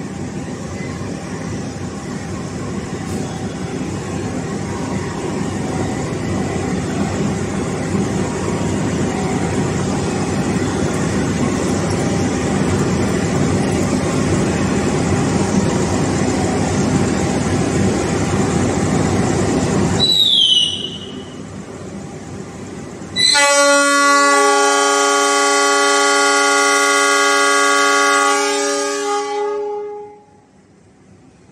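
Diesel locomotive engine running at a station, its rumble growing slowly louder. About twenty seconds in there is a short high falling whistle. Then the locomotive's multi-tone horn sounds one long, steady blast of about six seconds, the departure signal.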